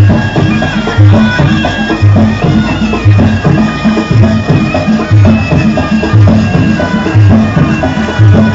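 Traditional silat accompaniment: a nasal, shawm-like reed pipe holding a continuous melody over a steady beat of hand drums, with a deep stroke about once a second and lighter strokes between.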